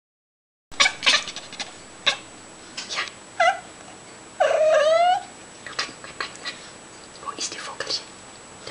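A domestic cat vocalizing at a bird it has spotted outside: short clicky sounds, a brief chirp, then a longer meow rising in pitch about halfway through, followed by more clicks.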